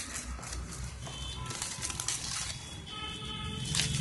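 Thin clear plastic wrap crinkling and crackling as it is pulled off a plastic retail box, in a ragged run of crackles with a louder one near the end.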